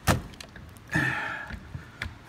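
Square D Homeline 40-amp double-pole circuit breaker being rocked onto the panel's bus bar: a sharp plastic click as it snaps in, then a short scraping rasp about a second in and a few small clicks.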